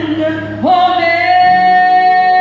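A woman singing. After a short dip she holds one long, steady high note from just past halfway in, over a low sustained accompaniment.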